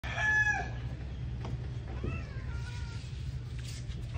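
A cat meowing twice: a short, level-pitched call at the very start, then a longer one that rises and falls about two seconds in.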